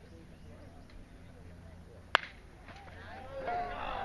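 A baseball bat striking a pitched ball: one sharp crack about two seconds in, followed by spectators' voices rising.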